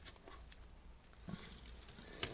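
Faint chewing of a mouthful of wrap: a few soft clicks and mouth sounds, barely above the quiet of the car.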